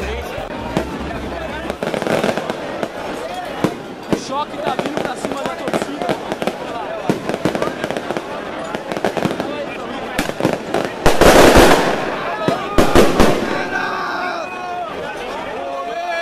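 A street crowd of football fans shouting, with handheld fireworks crackling and popping. The loudest bursts come in the last third.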